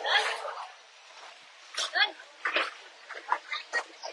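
Background voices of people at a busy fish market: short calls and chatter, with a brief burst of noise at the start.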